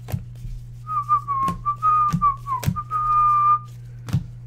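A person whistling a short tune, one clear note that wavers and steps in pitch for about three seconds, starting about a second in. Sharp clicks of trading cards being flicked and stacked by hand sound over it.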